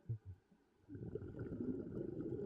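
Two short low thumps, then from about a second in the rumble of a scuba diver's exhaled bubbles leaving the regulator, heard underwater.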